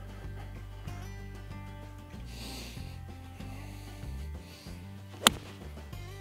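Golf iron striking a ball off fairway turf: one sharp, crisp click about five seconds in, over soft background music.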